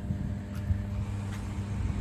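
Steady low electrical hum of 110 kV substation equipment, one unchanging drone with a fainter overtone above it, over a low irregular rumble.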